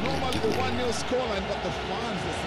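Football stadium crowd: many voices calling at once over a steady background roar.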